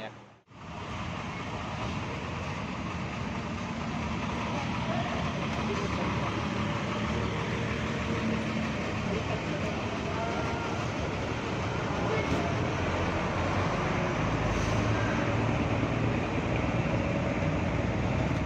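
Large diesel bus engine running as the bus pulls past, with a low rumble that swells in the last few seconds, over street traffic and background voices.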